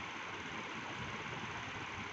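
Steady, even hiss of background recording noise, with no other sound.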